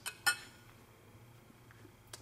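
Two brief clicks near the start, then quiet room tone.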